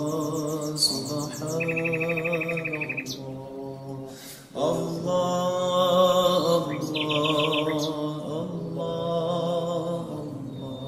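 Slow, drawn-out male chanting of 'Allah' (dhikr), with birdsong mixed over it: high chirps at the start, a rapid trill a couple of seconds in and another shorter trill about three-quarters of the way through. The chanting breaks off briefly near the middle and comes back in with a rising slide.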